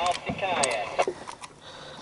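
Short snatches of a voice, with a few sharp clicks and knocks as a hand works a deep-set circle hook out of a red snapper's mouth.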